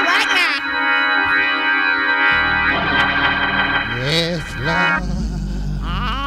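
Church organ playing held chords, changing chord about two seconds in, with a low bass note coming in near the end. A voice sounds briefly over the organ shortly before the bass note.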